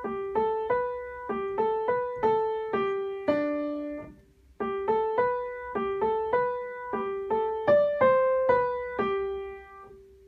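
Out-of-tune acoustic piano playing a slow single-note intro figure in G: a repeated lower note alternates with a climbing line, struck about two or three notes a second. The figure is played twice, with a short break about four seconds in, and the last note is left to ring near the end.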